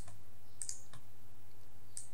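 A couple of faint computer mouse clicks, about half a second and a second in, over a steady low electrical hum.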